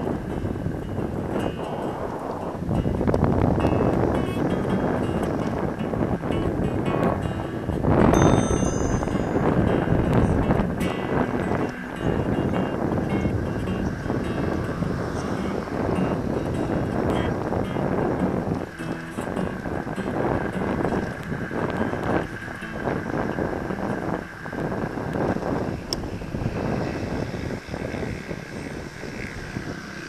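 Wind buffeting the microphone and road noise while riding an electric hub-motor scooter at speed; the motor itself is nearly silent.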